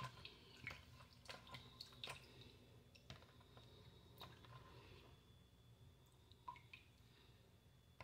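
Near silence with faint wet squishes and small clicks of hands rubbing a thick shea body scrub, with scattered drips of water. The sounds are sparse and grow fewer in the second half.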